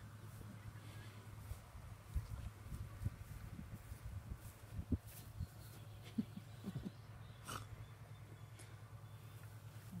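A litter of young puppies eating together from a plastic multi-bowl feeder: faint, scattered slurping, chewing and snuffling sounds with small clicks, over a steady low hum.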